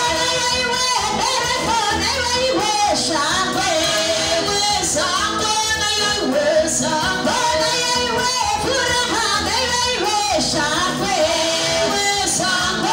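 Two women singing a gospel song together into handheld microphones, over instrumental backing with a steady beat.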